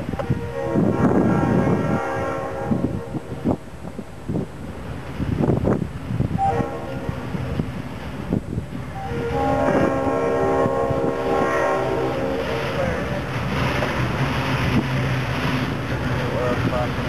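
Diesel freight locomotive horn, on a GE C39-8, sounding a long chord blast at the start, a short toot about six and a half seconds in, and a longer blast from about nine to thirteen seconds. Underneath runs the rumble of the diesel engine and the approaching freight cars, growing louder near the end.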